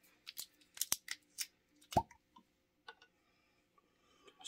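Stopper being twisted and pulled from the neck of a tequila bottle: a run of small squeaky clicks and crackles, then a sharp pop about two seconds in as it comes free, and a couple of faint ticks after.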